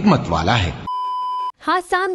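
A single steady electronic beep, a flat high tone lasting about half a second, dropped in as an editing sound effect at a cut between segments.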